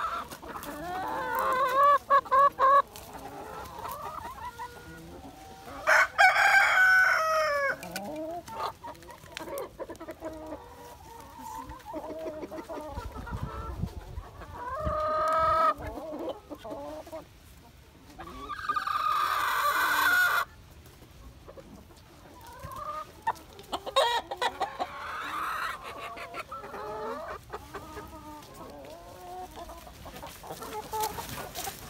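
A free-range flock of hens and roosters clucking and calling continuously. Several louder, drawn-out calls stand out, among them roosters crowing.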